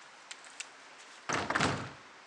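A door being opened by hand: two faint clicks, then a louder noise of about half a second near the end as the door moves.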